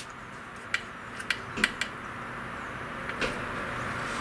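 Light clicks and taps of clear plastic dust-boot brackets being handled and fitted by hand onto a CNC router mount, about six small clicks, most in the first two seconds, over a steady faint hiss.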